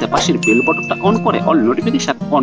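A single high, bell-like ding sound effect from a subscribe-button animation, starting about half a second in and ringing steadily for about a second, over a man's speech and background music.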